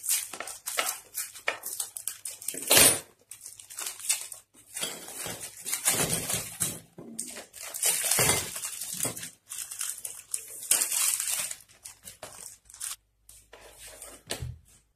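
Plastic Oreo biscuit packets being crinkled and torn open by hand: irregular rustling and crackling bursts, with one sharp, loud burst about three seconds in.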